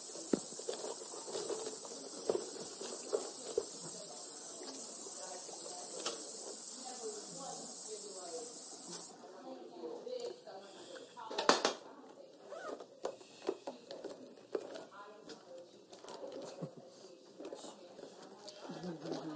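A steady high hiss under faint, indistinct chatter, which cuts off suddenly about nine seconds in. Quieter chatter follows, with one sharp click a couple of seconds later.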